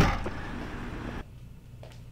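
A car trunk lid slammed shut: one sharp, loud thud that dies away quickly, followed by outdoor background hiss. About a second in, the background drops to quiet indoor room tone with a faint click.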